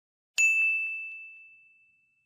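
A single bright bell ding sound effect, struck about a third of a second in and ringing out, fading away over about a second and a half.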